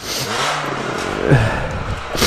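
Dirt bike engine running, with a brief rev about a second and a half in, under a steady rush of wind and engine noise on a helmet-mounted microphone.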